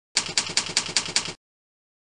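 Typewriter keystroke sound effect from a slideshow: six even clacks about five a second, stopping abruptly after just over a second.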